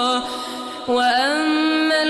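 A male reciter chanting the Quran in the melodic tajwid style, with long held notes. The voice drops quieter briefly, then takes up a new sustained note about a second in.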